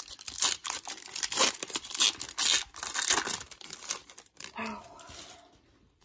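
The foil wrapper of a 2004 Topps Chrome football card pack being torn open and crinkled by hand, a dense run of irregular crackling rustles that dies away about five and a half seconds in.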